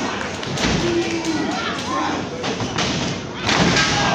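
Wrestlers' bodies hitting the canvas of a wrestling ring: several heavy thuds spread through the moment, the loudest near the end. Shouting voices come in between.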